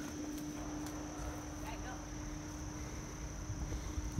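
Steady high-pitched drone of insects in woodland, over a faint low steady hum. Beneath it is the rustle and low rumble of walking through undergrowth with the camera being jostled.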